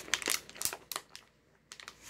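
Crinkling of a small plastic zip-top bag of popcorn being handled: a run of irregular crackles that dies away about a second and a half in, then a few faint clicks near the end.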